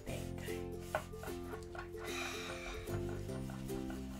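Light background music with a stepping melody, over faint scrubbing of a foam ink-blending brush rubbing ink onto paper.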